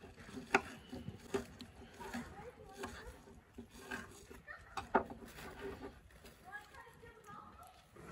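A quiet stretch of light clicks and taps from eating utensils and dishes, with faint, low voices in the background.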